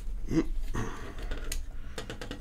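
Handling of a shielded ethernet wall jack as its front plate is pressed on, with one sharp click about a second and a half in as the plate snaps into place. A short grunt of effort comes near the start, over a low steady hum.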